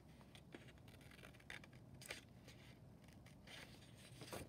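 Faint, scattered snips and rustles of scissors cutting through paper and the paper being handled.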